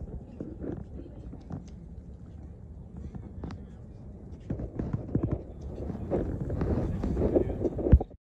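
Outdoor ambience with wind rumbling on a phone microphone and indistinct voices, which grow louder in the second half.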